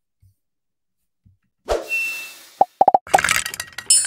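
Sound effects of an animated logo sting. After about a second and a half of near silence comes a sudden whoosh, then a quick run of about five pops and a burst of electronic noise, with high steady tones coming in near the end.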